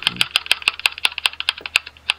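Ticking sound effect of an online spinning name-picker wheel: rapid, even clicks that slow steadily from about eight to about six a second as the wheel loses speed.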